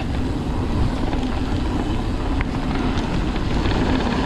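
Mountain bike riding down a dirt singletrack: a steady rush of wind on the microphone over the rumble of tyres on the trail, with a faint click or two from the bike about two and a half seconds in.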